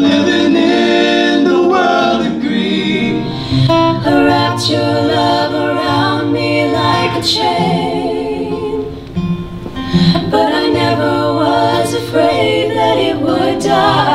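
Female voices singing together in harmony, accompanied by an acoustic guitar.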